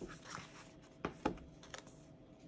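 Faint paper handling as a sticker book is slid aside and a peeled paper sticker is pressed onto a planner page, with two short clicks about a second in.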